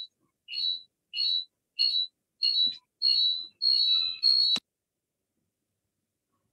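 A rapid series of loud, high-pitched chirps repeating about every half second, each a little longer than the last, cut off suddenly about four and a half seconds in.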